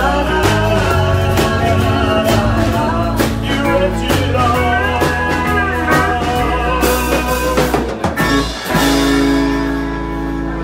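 Live country band playing the closing bars of a song with guitars, bass and drums. Near the end the drum strokes stop and a final chord is left ringing.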